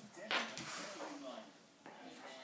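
Two dogs, a bloodhound and a bulldog-Rottweiler cross, play-fighting. Wavering pitched dog vocalizations are heard, with a sudden scuffling burst about a third of a second in, the loudest moment.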